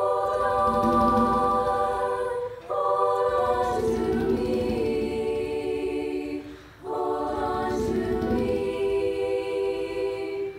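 Girls' virtual choir, voices recorded separately at home and mixed together, singing long sustained phrases of a hymn. The held chords break briefly for breaths about two and a half seconds in and again near seven seconds.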